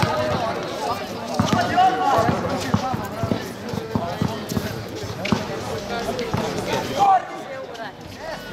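Basketball bouncing on an asphalt court in irregular thuds during play, with players' voices calling over it.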